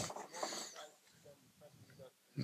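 Faint speech trailing off in the first half second, then near silence.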